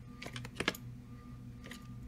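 Handling noise from a VHS tape case being turned in the hand: a short cluster of clicks and taps in the first second, over a steady low hum.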